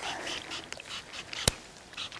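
Faint rustling with a single sharp click about one and a half seconds in.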